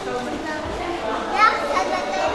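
Chatter of several people talking over one another in a large hall, with one voice, likely a child's, rising louder about one and a half seconds in.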